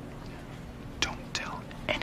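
Low whispered speech, a few sharp hissing consonants standing out over a soft background hiss.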